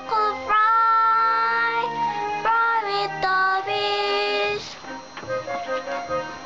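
A child singing a children's song in English over a backing track, holding long notes. The singing stops about four and a half seconds in, leaving only the accompaniment.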